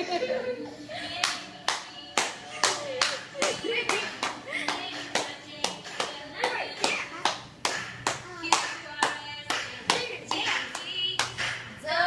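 Steady rhythmic hand clapping, about two to three claps a second, keeping a beat, with voices between the claps.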